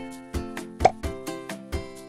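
Light background music of plucked notes over a steady beat, with a short bright pop a little under a second in, the loudest sound.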